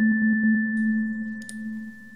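The last held chord of a synthesized, organ-like intro jingle dies away: a low steady tone with a thin high tone above it, fading out. There is a faint click about a second and a half in.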